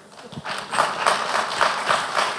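Audience applauding, the clapping swelling in about half a second in and carrying on as a dense patter of many hands.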